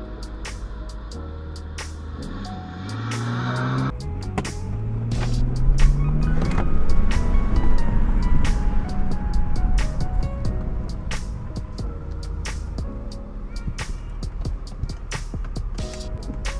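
Twin-turbo all-wheel-drive 2010 BMW sedan accelerating away hard: its engine note rises, breaks at a gear change about four seconds in, and rises again. It is loudest around the middle, under background music with a steady beat.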